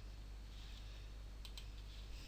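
Two faint clicks about a second and a half in, over a low steady hum.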